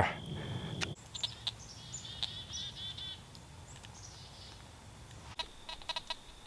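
A small songbird calling: scattered high chirps from about a second in, then a quick run of repeated notes around two to three seconds in. Before the birdsong, a low rumble and a thin steady high tone stop with a click about a second in.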